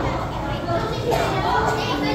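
Children's voices chattering and calling out, over a steady low rumble of room noise.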